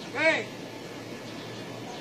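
A single short shouted call from a man's voice, rising and falling in pitch, near the start: a called drill command in karate practice.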